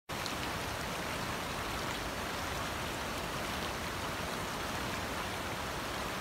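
Shallow stream running over stones: a steady, even rush of water.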